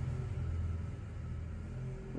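A steady low mechanical rumble with a faint hum, easing off slightly in the second half.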